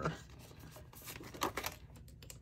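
Faint desk handling: light rustles and a few soft clicks as hands move over a clear plastic binder sleeve and reach into a cup of pens.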